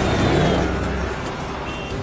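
A car engine revving hard as the vehicle accelerates, with a loud rush of road noise; the revs climb in the first moments and hold for about a second, then ease to a steadier run.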